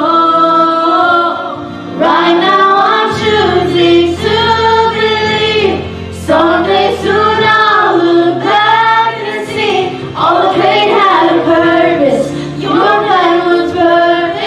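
Voices singing a sacred song together in harmony through handheld microphones, women's voices leading, in phrases of about two seconds with brief dips between them and low sustained notes underneath.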